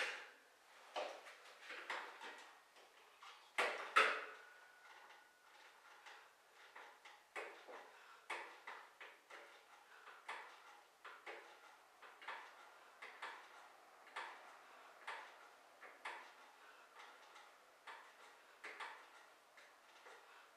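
A man's short, sharp breaths in a steady rhythm while doing decline sit-ups on a bench, roughly one to two a second, with a few louder breaths or knocks in the first four seconds as he gets into position.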